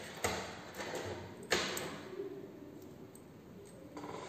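A few light clicks and knocks from connecting leads being handled and plugged into meter and rheostat terminals. The clearest come about a quarter second in and about a second and a half in, the second one the loudest.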